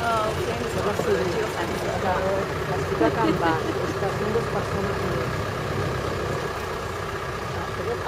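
Open-top jeep's engine running steadily as it drives along a dirt track, a low rumble throughout. Voices are heard faintly over it in the first half.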